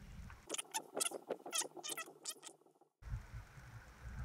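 Cactus chenille crackling as it is wrapped around a hook shank: a quick, quiet run of small scratchy crackles that stops shortly before the end.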